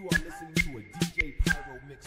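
Hip hop beat with sharp, regular drum hits about every half second and a low voice running under it.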